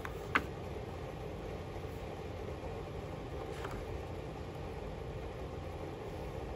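Sketchbook pages being flipped by hand: one sharp paper flick about half a second in and a fainter one midway, over a steady low background hum.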